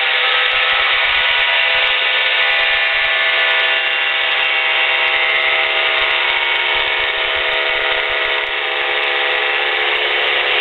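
Weight-shift trike's engine and propeller running at takeoff power on the takeoff roll: a steady drone of many even tones, heard thin through the cockpit intercom.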